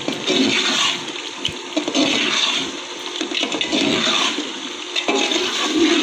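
Metal slotted spoon stirring and scraping thick, oily meat masala around a large metal cooking pot, a wet, sloshing noise that swells with each stroke, roughly every second and a half.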